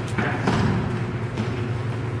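Footfalls of players running on a gymnasium floor during indoor soccer, with a few sharp thuds echoing in the hall, the strongest near the start, over a steady low hum.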